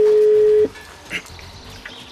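A telephone ringback tone: one long, steady ring on the line while the call is put through, cutting off sharply just over half a second in; the other end has not yet picked up.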